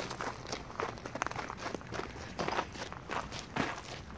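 Footsteps on a gravel path, people walking at an easy pace with short, irregular steps about two a second.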